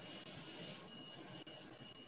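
Faint steady hiss of a just-opened microphone channel, with a thin high whine that drops out briefly about a second in.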